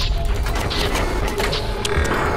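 Intro sound effects for an animated tech-show opening: a dense run of mechanical clicks and ratcheting over a deep rumble, with music underneath.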